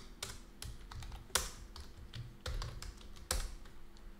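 Typing on a computer keyboard: irregular key clicks, with a couple of louder keystrokes about a third of the way in and again shortly before the end.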